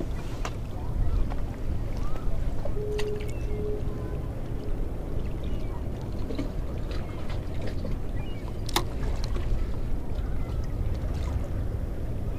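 Steady low wind rumble on an action-camera microphone at the water's edge, with a few faint clicks from handling the spinning rod and reel and a faint steady hum for a second or two about three seconds in.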